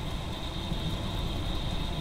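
Steady background room noise with a constant faint high-pitched whine and a low rumble, in a pause between speech.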